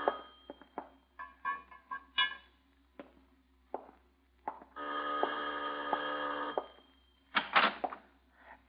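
Radio-drama sound effect of a doorbell ringing steadily for about two seconds, after a run of scattered light clicks and knocks.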